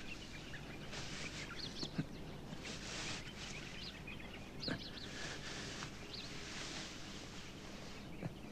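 Small birds chirping here and there over a steady background hiss, with two soft knocks, one about two seconds in and one near the middle.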